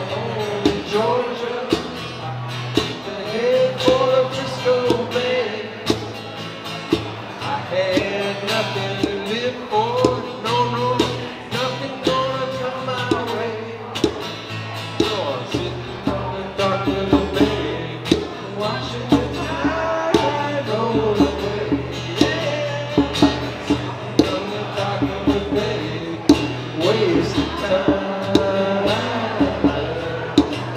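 Live acoustic guitar and djembe playing a song, the djembe keeping a steady beat of sharp hand strokes under a sung melody.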